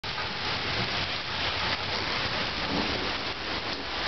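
Steady thunderstorm rain falling on a lawn, pavement and street, an even hiss at a constant level.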